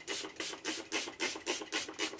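Fine-mist spray bottle spritzing rose toner onto the face in quick repeated pumps, about four short hissing sprays a second.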